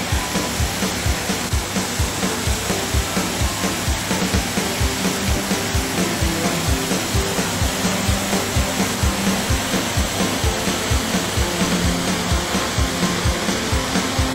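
Water rushing over a small concrete weir into a channel: a loud, steady hiss. Music with a quick, steady beat plays along with it.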